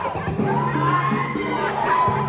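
A group of voices shouting and whooping together, with music playing underneath.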